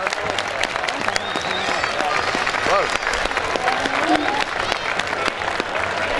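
A crowd of spectators applauding, many hands clapping unevenly, with voices calling out among the claps.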